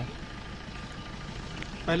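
Faint, steady background noise with no distinct events, during a pause in a man's speech. His voice comes back just before the end.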